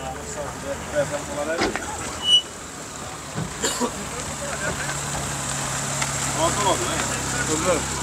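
Background chatter of voices over a car engine running steadily, its low hum clearer in the second half, with a few scattered knocks.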